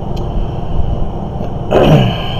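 Steady low background rumble. Near the end comes a short, loud vocal noise from the man, like a throat-clear or breath.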